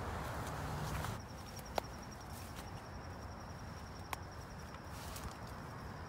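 Footsteps and rustling through thick brush for about the first second, then a high, steady insect trill with two sharp clicks, like twigs snapping underfoot.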